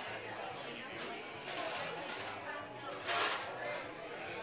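Indistinct background chatter of several people talking, with a sharp click about a second in and a brief louder rush of noise about three seconds in.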